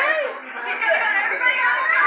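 Indistinct chatter of several people talking at once, with no clear words.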